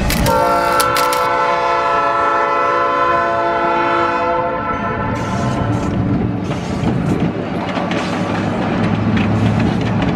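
Diesel locomotive's multi-note air horn sounding one long blast of about four and a half seconds, then the passenger train rolling past with its wheels clattering over the rail joints and the engine rumbling.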